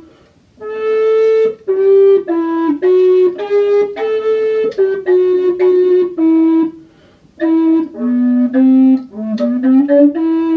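A recorder playing a slow melody, one note at a time, in a fairly low register. The notes are held about half a second to a second each, and there are two short breaths, about half a second in and around seven seconds in.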